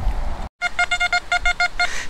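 Metal detector sounding a quick run of short, same-pitched beeps, about eight a second, as the coil passes over a buried metal target. The beeps begin just after a brief dropout.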